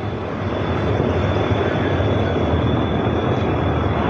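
Steady rushing outdoor noise with a low rumble and a faint, thin high whine running through it.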